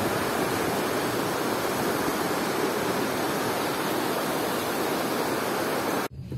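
Glacial meltwater stream flowing over rocks in small cascades: a steady, even rush of water.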